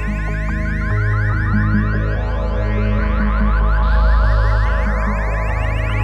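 Goa trance track: a rapid run of short rising synthesizer chirps, alarm-like, whose pitch sinks and then climbs again, over a pulsing synth bass line and a steady low drone.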